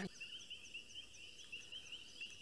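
Night insects, cricket-like, chirping steadily in a fast, even, high-pitched pulse, faint against low background noise.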